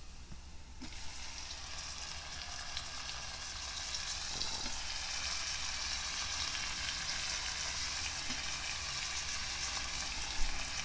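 Chopped tomatoes dropped into hot oil over frying onions: the sizzle jumps up suddenly about a second in and then grows steadily louder. A few faint knocks of a metal spoon against the pot.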